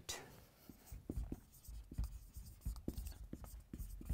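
Marker pen writing on a whiteboard: a run of short, irregular strokes and taps, a few a second, as a word is written out.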